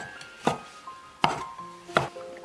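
A cleaver slicing cured Chinese sausage on a wooden chopping board: three sharp knocks of the blade striking the board, roughly three-quarters of a second apart, over soft background music.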